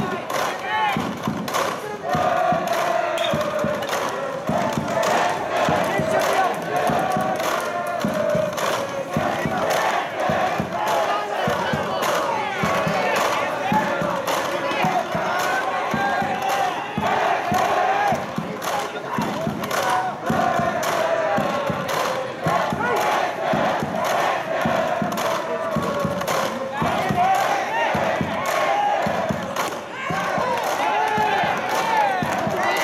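A high school baseball cheering section chanting and shouting in unison, with a rhythmic beat running under the voices.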